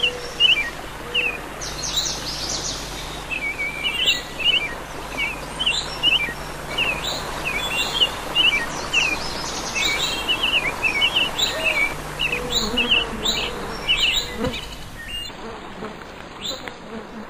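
Forest soundscape: many small birds chirping and calling in quick succession over a steady background hiss. The birdsong stops about a second before the end.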